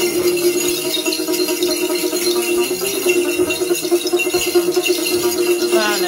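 Clusters of small jingle bells (xóc nhạc) used in Then ritual, shaken by hand in a continuous fast jingling rattle, with a steady tone beneath. A voice starts singing near the end.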